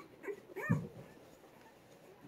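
A newborn Cane Corso puppy gives a short, high squeaky whimper whose pitch rises and falls, about two-thirds of a second in, with a fainter squeak just before it.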